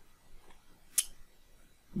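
Quiet room tone with one short, sharp click about halfway through.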